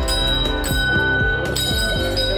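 Small brass temple bell rung by hand, struck three times at a steady pace, each strike leaving a ringing tone that carries over into the next.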